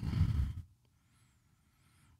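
Near silence: the last of a voice fades out in the first half second, then dead quiet.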